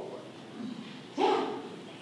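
A brief pause in a talk: low room tone, then one short vocal sound about a second in, a single syllable or brief exclamation that quickly fades.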